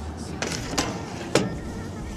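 Three sharp clicks and knocks, spaced about half a second apart, from the lid of an electrical enclosure being handled.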